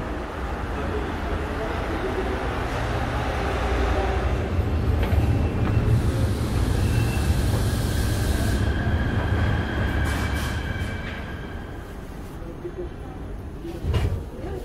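Metro train rumbling loudly in the station, with a thin steady whine joining near the middle; the rumble eases off toward the end.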